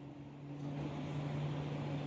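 Faint steady low mechanical hum over outdoor background noise, the noise growing a little about half a second in.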